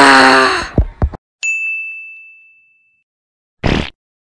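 A man's loud straining groan breaks off just after the start, followed by a bright 'ding' sound effect: one high bell-like tone that rings and fades away over about a second and a half. A short noisy burst comes near the end.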